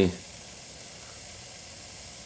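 Steam radiator hissing softly and steadily as the steam heat comes up.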